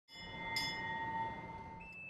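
Boatswain's pipe holding steady shrill whistled notes, with a sharp accent about half a second in, then stepping up to a single higher held note near the end: ceremonial piping of a visitor aboard a warship while sideboys salute.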